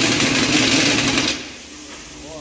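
Heavy impact wrench on a wheeled stand running against a truck wheel's lug nut, tightening it after the wheel is refitted. It stops about one and a half seconds in.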